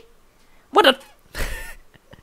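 A man speaks one short word, then lets out a brief, breathy burst of laughter into the microphone.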